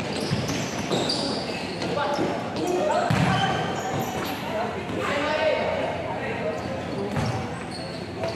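A futsal ball being kicked and bouncing on an indoor court, several thuds, under voices shouting. Everything rings in a large, echoing hall.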